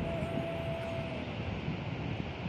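Steady rushing of a rocky mountain river in a valley. A held tone fades out about a second in.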